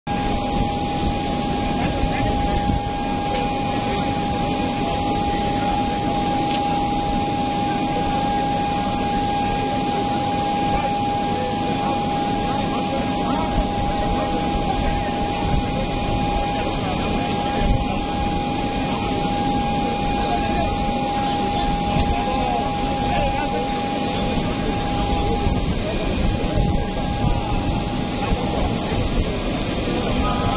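A parked business jet's turbine running with a steady high whine over a loud rushing noise, with crowd voices mixed in; the whine dies away a few seconds before the end.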